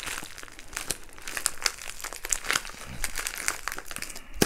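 A thin plastic bag being crinkled and crumpled in the hands as it is worked open, giving a dense, irregular run of crackles.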